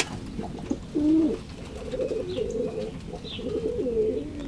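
Domestic pigeons cooing: low, wavering coos from about a second in, several birds overlapping toward the end, with a few faint high chirps over them.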